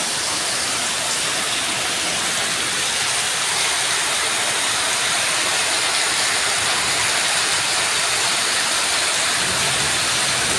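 Heavy rain pouring down onto tiled paving and a brick wall, with roof runoff falling in a stream and splashing onto the ground, as one steady hiss. It grows a little louder a few seconds in.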